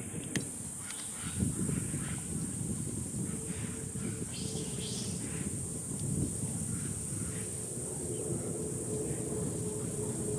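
Outdoor ambience: a steady low rumble under a constant high hiss, with faint short chirps here and there.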